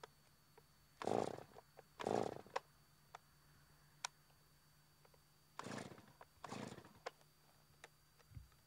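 Small chainsaw being pull-started: the starter cord is yanked four times in two pairs, each pull a short rasping whirr, with small clicks from handling the saw between pulls. The engine does not catch.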